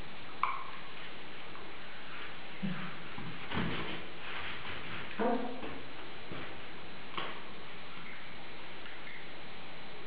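A few scattered light clicks and knocks, five or so spread across the stretch, over a steady background hiss.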